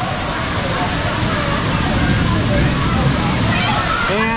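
Steady rushing and splashing of water from a waterfall pouring into a lazy river, with faint voices near the end.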